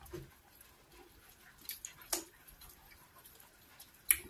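Close-miked eating sounds of cocoyam fufu and ogbono soup eaten by hand: a few short, sharp wet smacks and clicks from the mouth and fingers. One comes right at the start and two come about two seconds in, with quiet between.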